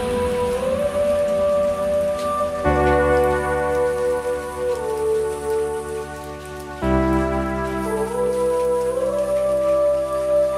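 Intro of an electronic trap track: sustained synth chords that change about every four seconds under a smoothly gliding lead melody, with a faint high hiss above.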